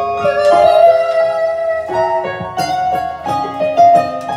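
Karaoke backing music playing loudly in a karaoke room, an instrumental passage of held notes that change every second or so.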